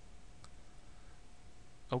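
A faint computer mouse click about half a second in, over a faint steady hum.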